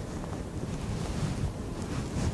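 Room noise in a pause with no speech: a low, steady rumble with a faint hiss above it.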